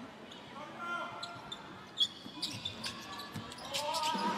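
A basketball dribbled on a hardwood court, a few scattered bounces echoing in a large arena, with a brief sneaker squeak about two seconds in and faint players' voices.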